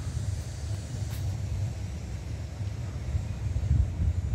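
Steady low rumble of outdoor street background noise, with no distinct event standing out.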